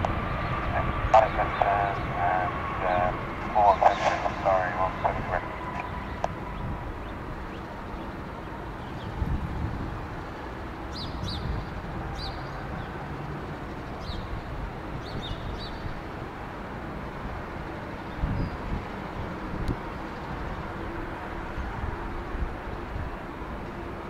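Airbus A320's CFM56 jet engines during its landing roll: a steady rushing roar with a thin whine that falls slightly in pitch and fades over the first six seconds as the thrust comes off.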